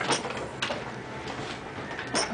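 Low rustling with a couple of soft knocks about half a second apart: handling noise of a toddler being lifted out of a plastic laundry tub.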